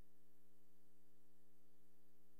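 Faint steady electrical hum made of a few fixed low tones, with no other sound over it.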